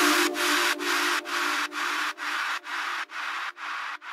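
Outro of a progressive house track: a hissing noise pulsing about twice a second in time with the beat, over a faint held chord, with no drums, slowly fading out.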